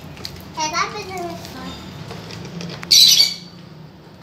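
A small child's high voice calling out, falling in pitch, with further faint children's voices after it; about three seconds in, a short, sharp burst of hissing noise, the loudest sound here.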